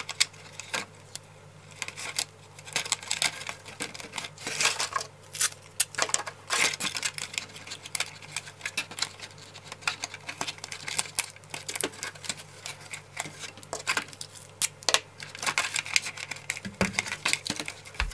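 Thin plastic of a cut-up milk bottle crackling and clicking as it is bent and handled, with strips of masking tape torn and pressed onto it: irregular small crackles with a few short rasps.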